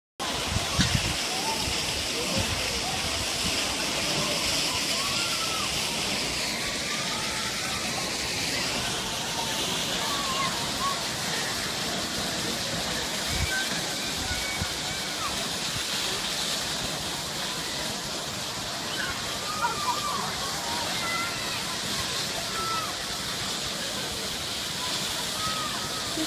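Burst water main sending a tall jet of water high into the air, heard as a steady rushing hiss of spraying and falling water.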